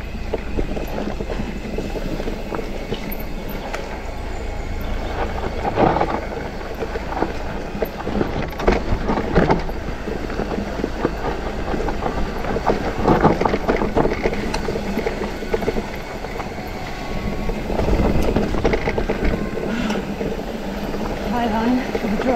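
Mountain-bike ride noise on a rooty dirt descent: tyres running over dirt, the bike's frame and chain rattling, and several louder knocks as the wheels hit roots and bumps, over a steady low rumble.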